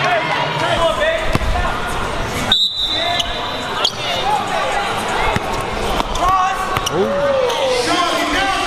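A basketball dribbled on a hardwood gym floor, short sharp bounces over spectators' voices and shouts in a large hall. The sound drops out for a moment a little under three seconds in.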